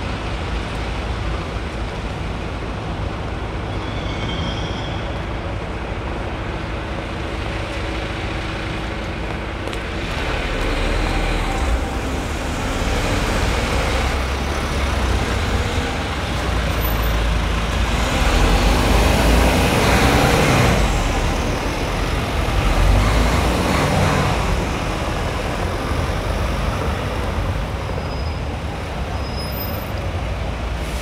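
Street traffic on a cobbled road with a large tour coach close by. The coach's engine and tyres swell from about ten seconds in, are loudest around two-thirds of the way through, then ease off.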